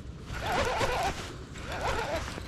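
Fishing reel being cranked fast, a rapid zipper-like whirr, as a hooked bass is reeled toward the boat.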